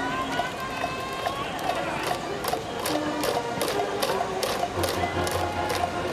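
Cheering-section brass band playing a tune over a steady drumbeat of about two to three beats a second, with voices chanting along.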